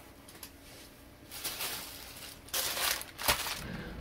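A shipping bag's packaging crinkling and rustling in a few bursts as an item is pulled out of it, with a sharp click near the end.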